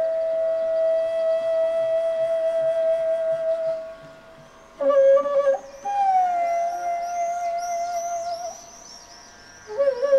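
Bansuri (bamboo transverse flute) holding one long sustained note. After a brief phrase about five seconds in, it plays a note that slides down and then holds. From about six seconds on, garden birds chirp quickly and repeatedly above the flute.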